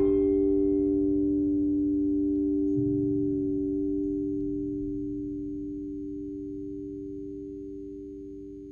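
The closing chord of a keyboard backing track ringing out: two steady, pure-sounding tones with faint overtones, fading slowly over the whole span.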